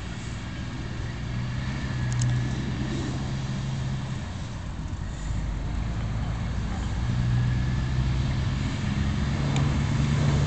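A motor vehicle engine running with a steady low hum that swells about two seconds in and again near seven seconds, with a few faint clicks over it.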